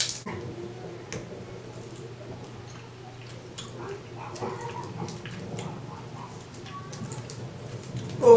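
A person chewing soft, sticky Pulparindo tamarind candy with the mouth closed: faint, wet mouth clicks and smacks.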